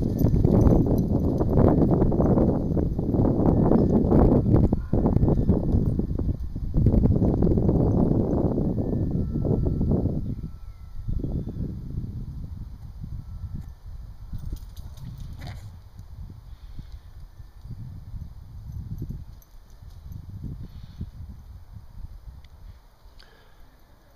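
Dogs' paws pounding and crunching over frozen grass and dry leaves as several large dogs gallop in play, with a quick rhythm of footfalls. Loudest for the first ten seconds or so, then quieter, scattered footsteps and thumps as the running slows.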